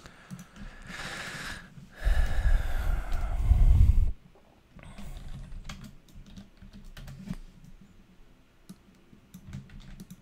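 Typing on a computer keyboard in short runs of keystrokes, most of them in the second half. About two seconds in, a loud breathy rush of noise lasts about two seconds and is the loudest sound.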